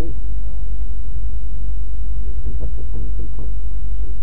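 Steady low rumble, with faint murmured speech in the middle.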